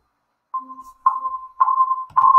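Connection beeps from a phone on speaker dialed in to a Google Meet call: three short beeps of the same pitch, about half a second apart, starting about half a second in, as the call joins.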